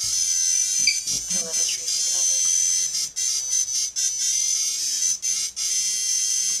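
High-pitched electronic tone from an FPV quadcopter just powered up, held steady with several brief breaks.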